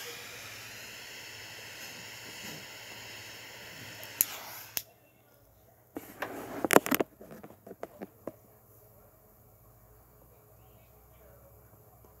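Butane torch lighter flame hissing steadily while lighting a cigar, cut off suddenly about five seconds in. A second or so later come a few short, loud puffs and clicks.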